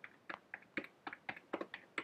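Computer keyboard typing: a steady run of separate key clicks, about five a second, as a long string of digits is keyed in one key at a time.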